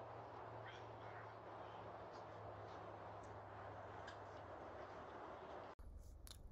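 Faint outdoor ambience picked up through a doorbell camera's microphone: a steady low hum and hiss with a few faint, short, high chirps, breaking off abruptly near the end.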